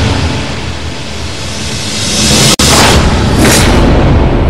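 Dramatic TV segment sting: booming, rumbling sound-effect hits over music. The sound cuts out abruptly about two and a half seconds in, then a second booming swell follows.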